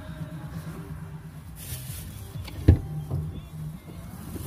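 A single sharp knock a little past halfway through, over a steady low hum: the phone that is filming is being moved and handled.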